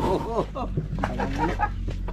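Chickens clucking in a quick series of short calls, over a steady low hum.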